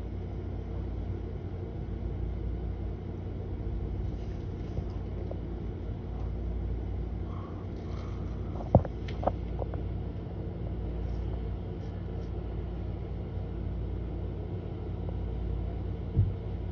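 Steady low rumble of an idling engine, with two sharp knocks about nine seconds in.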